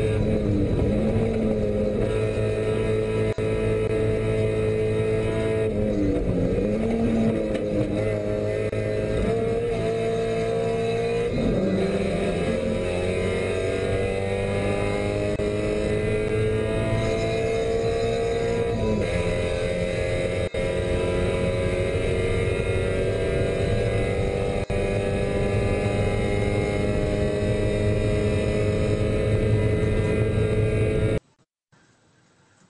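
Spec Miata race car's four-cylinder engine at high revs, recorded inside the cockpit on a racing lap. Its pitch dips twice in the first dozen seconds as the car slows for corners, then climbs steadily under full throttle, drops briefly at an upshift about 19 seconds in, and climbs again.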